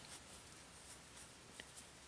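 Near silence with faint rustling and a few light ticks from a wooden crochet hook working yarn as a slip stitch is made.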